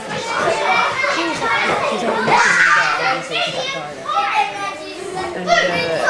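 A group of young children talking and calling out over one another, a continuous jumble of high voices with no single clear speaker.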